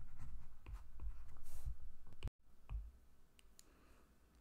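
Low room rumble with a few faint clicks, cut off abruptly a little past halfway, followed by very faint room tone.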